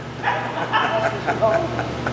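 A man's voice through a handheld microphone making a quick string of short, high-pitched vocal sounds.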